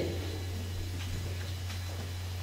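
A pause in the spoken performance filled by a steady low electrical hum from the microphone and PA system, with a few faint ticks.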